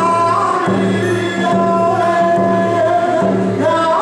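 One man singing a hand drum song in a high voice over steady beats on a hide hand drum. The melody starts high, settles lower through the middle and climbs again near the end.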